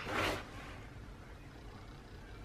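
A brief papery rasp as a planner sticker is handled, then faint rustling of paper and sticker as it is pressed onto the page.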